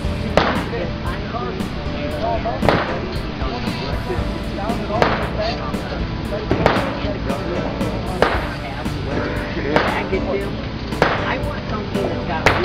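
M2 Browning .50 BMG heavy machine gun firing single shots: about seven reports spaced one and a half to two seconds apart, heard from well back on the range.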